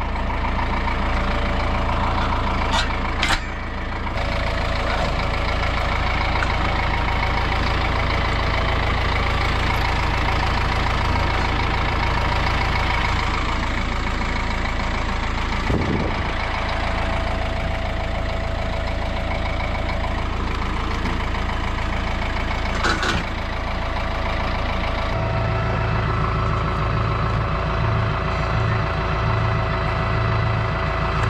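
Compact tractor's diesel engine idling steadily, with a few sharp clicks about three seconds in and again past the twenty-second mark. About five seconds before the end a lower, pulsing hum joins the idle.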